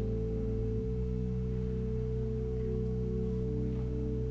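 Pipe organ holding sustained chords over deep bass notes, the chord changing about a second in.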